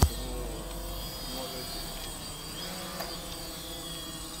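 DJI Phantom quadcopter hovering, its rotors giving a steady buzz made of several held tones. A brief low thump comes right at the start.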